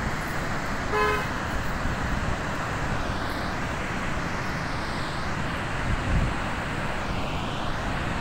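Steady rushing of floodwater pouring through a dam's open spillway gates, with a brief horn toot about a second in.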